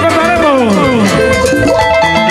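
Live Peruvian cumbia band music: a lead melody line glides downward over about the first second, then settles into held notes over a steady bass and beat.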